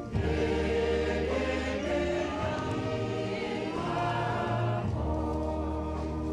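Choir singing a slow hymn in long held chords, moving to a new chord at the start and again about five seconds in.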